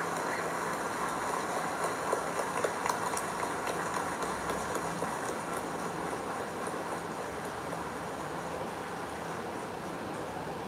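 Applause from a crowd, many hands clapping together, slowly easing off.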